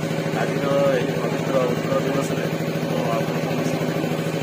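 A man talking, his voice over a steady engine-like hum.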